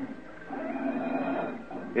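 Indistinct murmur of congregation voices answering from the hall, as they reply to whether they can hear the preacher. It comes in about half a second in and dies away near the end.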